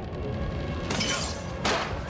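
Two shattering crashes from a film fight soundtrack, about a second and nearly two seconds in, over music.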